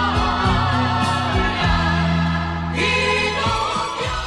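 Music with singing: voices with vibrato over sustained low bass notes that change a few times.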